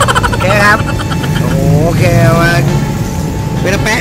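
Steady low rumble of vehicle engines in street traffic, with a child's wordless voice sounding over it twice.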